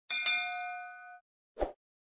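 Notification-bell sound effect: a single bright chime ringing with several tones that fades out after about a second, followed by a short soft thud about a second and a half in.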